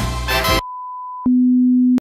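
Intro music ends about half a second in and gives way to a steady 1 kHz test tone, then a louder, lower steady tone that cuts off suddenly: the beep of a TV colour-bars test signal.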